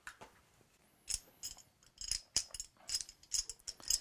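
Irregular light clicks, a few per second, as a small metal brain-teaser puzzle is handled and its pieces knock together.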